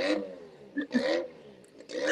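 A nearby engine revving in two short bursts, about a second apart.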